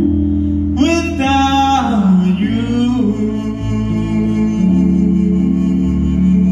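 Live blues song on electric keyboard: sustained chords over changing bass notes, with a sung phrase from about one to two and a half seconds in that slides down in pitch.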